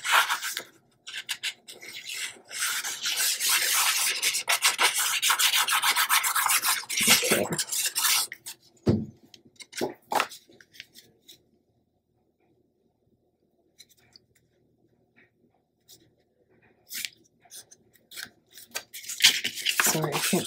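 Hands rubbing and smoothing paper against chipboard: a dense, dry rubbing for the first several seconds. It is followed by a few soft thumps and a knock, then a quiet stretch with light paper handling and clicks near the end.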